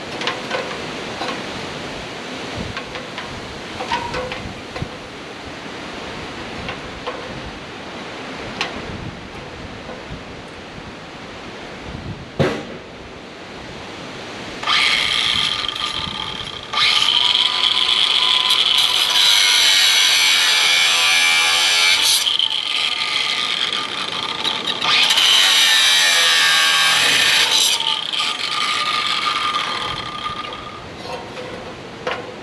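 Handheld angle grinder, running in three bursts of a few seconds each through the second half with a steady high whine, cutting steel cattle-fence wire. Before it, wind buffets the microphone and there are light knocks.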